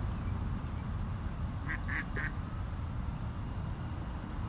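Three short, quack-like bird calls in quick succession about halfway through, over a steady low rumble.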